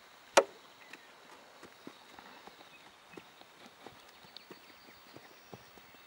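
A horse and a person walking on bare dirt, their footfalls faint irregular thuds. A single sharp click comes about half a second in.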